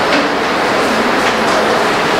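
Steady, loud rushing noise with no clear rhythm or distinct events, the kind of constant background noise heard in a noisy hall recording.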